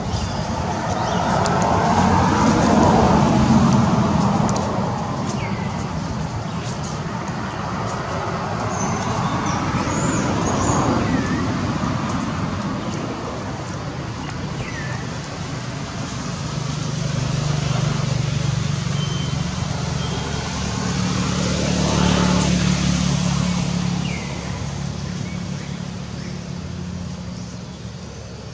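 Passing motor traffic: engine and road noise swells and fades three times as vehicles go by, with a low engine hum holding through the middle stretch.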